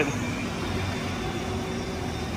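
Child's battery-powered ride-on toy Ferrari LaFerrari driving across a concrete floor: a steady electric motor hum with rolling noise.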